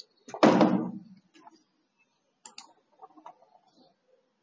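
A single short, dull knock about half a second in, then a few faint clicks, like desk and keyboard or mouse noises.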